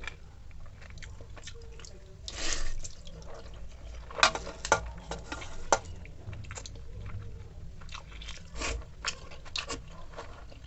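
Close-up eating sounds: a person chewing and eating water-soaked rice and egg omelette by hand, with wet squelching and smacking, a louder noisy burst about two and a half seconds in, and a few sharp clicks around the middle and near the end.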